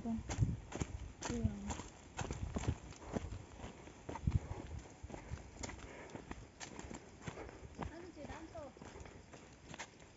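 Footsteps walking along a dry dirt path: an irregular run of short soft steps, with brief faint talk about a second in and again near the end.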